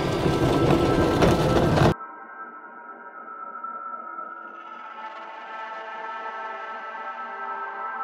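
Car cabin noise while driving on a dirt road, a loud rumble that cuts off suddenly about two seconds in. Quiet ambient music with long held tones follows.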